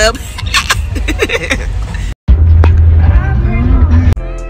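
Low rumble of a car heard from inside the cabin, with clicks from a handled phone and fragments of voices. A brief dropout comes about two seconds in, and after it the rumble is louder.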